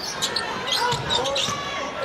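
Basketball game sound on a hardwood court: the ball bouncing, with short high squeaks of sneakers on the floor.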